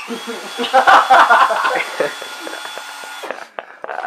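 Cordless drill motor running at a steady, high whine for a little over three seconds, spinning a rag doll held under its chuck, then stopping.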